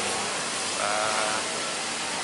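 A man's short drawn-out hesitation sound, a level voiced 'eee' of about half a second near the middle, over steady background noise.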